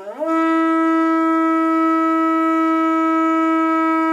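Conch shell trumpet blown: one long note that swoops up at the start and is then held steady.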